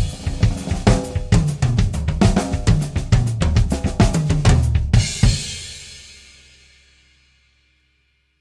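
A drum kit playing a fast, busy run of snare, bass drum and cymbal strokes. About five seconds in it ends on a final cymbal crash with a bass drum hit, which rings out and fades away.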